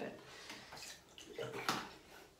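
Water splashing and sloshing in a plastic bowl as a rubber bulb ear syringe is handled, with a louder burst of splashing about three-quarters of the way through.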